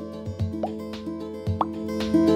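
Soft background music with two short rising 'plop' sound effects, about two-thirds of a second and a second and a half in, marking the clicks of an animated subscribe button.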